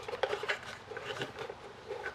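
Faint, scattered taps and scrapes of hands handling a small wooden craft house while feeding a charging cable through its holes.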